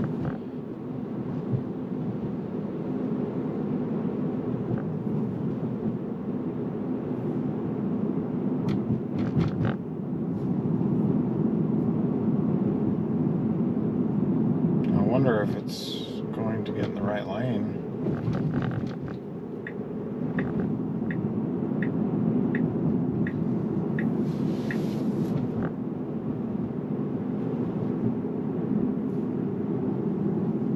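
Steady road and tyre noise inside a Tesla's cabin as it drives. About halfway through there is a brief rising tone, followed by the turn signal ticking evenly, about one and a half ticks a second, for several seconds.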